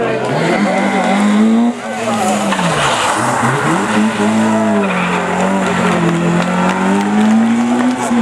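Rally car engines revving hard as the cars pass, pitch rising and falling repeatedly with gear changes and lifts off the throttle.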